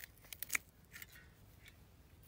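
Pruning shears snipping through the stalk of a dragon fruit on its cactus stem: a quick run of sharp clicks and snips, the loudest about half a second in, then one or two fainter clicks.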